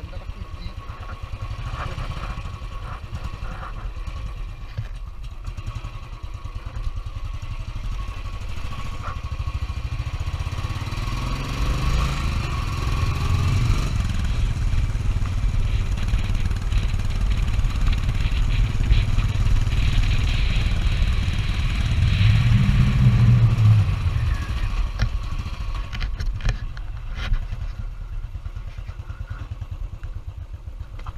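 Royal Enfield Bullet Electra 350 twin-spark single-cylinder engine running as the motorcycle rides along a rough lane. The engine note rises about ten seconds in and swells loudest a little past twenty seconds before settling again.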